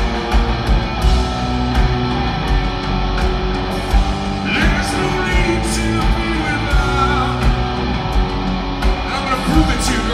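Live rock band playing: electric guitar over drums and cymbals, with a wavering high melody line rising above the band about halfway through and again near the end.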